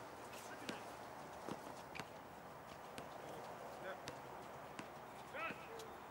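Faint sounds of a pickup basketball game: a ball bouncing and players' footfalls on the hard court, heard as scattered irregular knocks. A player gives a short call about five seconds in.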